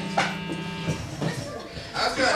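Electric guitar amplifier buzzing with a steady hum that fades about a second in, with a few short clicks as a plugged-in electric guitar is handled.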